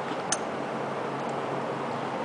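Steady hiss of room noise with one light click about a third of a second in, as a small bolt is set back into its hole on the engine.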